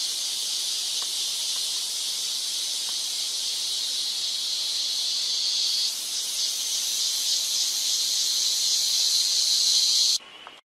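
A chorus of tropical forest insects: a steady high-pitched buzzing drone, a little louder in the second half.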